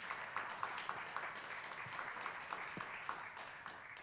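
Light applause from a small audience, with individual hand claps standing out, dying away near the end.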